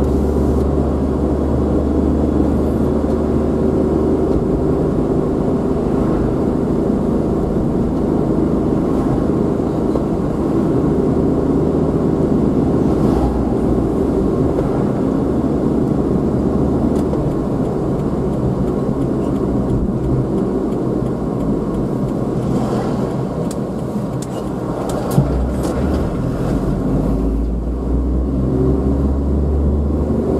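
A car driving steadily, with continuous engine and road noise and a low rumble. Near the end the rumble dips and returns, and a few sharp clicks and a single knock stand out.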